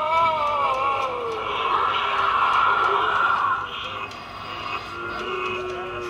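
Animated Halloween skull-wall decoration playing its spooky sound effects through its small built-in speaker. A long wavering, voice-like moan sinks away about a second in and is followed by a harsh, breathy scream-like rush, with lower held tones near the end.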